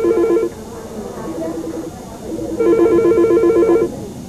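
Electronic telephone ringing with a rapid two-tone warble. One ring ends about half a second in, a fainter ring follows, and another loud ring comes near the end.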